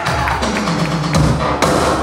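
Live band playing loud music: drums hitting hard over sustained guitar and keyboard chords, with strong hits at uneven gaps of roughly half a second.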